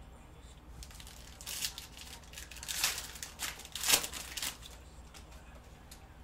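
A 2021 Panini Prizm UFC hobby pack's foil wrapper being torn open and crinkled by hand: a run of crackling rips from about a second and a half in, loudest near the four-second mark, dying away about a second later.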